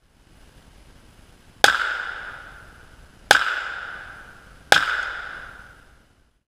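Three shots from a .380 handgun, about a second and a half apart, each sharp crack trailing off in an echo that fades over a second or so.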